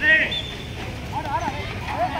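A loud high-pitched shout right at the start, then short high calls a little past the middle: players' voices calling out during a ball badminton rally.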